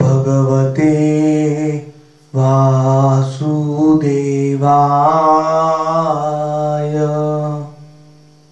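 A man chanting a Sanskrit devotional mantra solo, in long held melodic notes: one phrase, a breath about two seconds in, then a longer phrase that fades away near the end.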